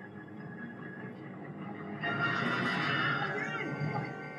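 Audio of a TV drama episode playing in the room: a low, steady bed of sound, swelling clearly louder with shifting, wavering tones about halfway through.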